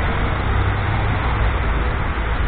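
Steady low rumble of city street traffic, with no single distinct event.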